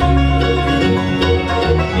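Bluegrass band playing live: banjo, mandolin, acoustic guitar and upright bass, with a strong bass note underneath.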